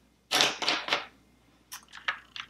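Makeup brushes being rummaged through and picked out: a short clatter, then a few light clicks near the end.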